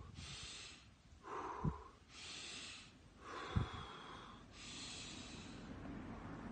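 A man breathing slowly and deeply, in through the nose and out through the mouth: three airy in-breaths alternate with two lower, rounder out-breaths, each out-breath carrying a brief low puff.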